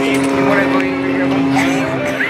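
Extra 330SC aerobatic plane's six-cylinder Lycoming engine and propeller droning steadily as it climbs.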